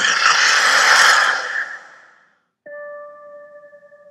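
Movie trailer soundtrack: a loud rushing, hissing sound effect fades out over about two seconds, then after a short silence a single bell-like note strikes and rings on, slowly fading.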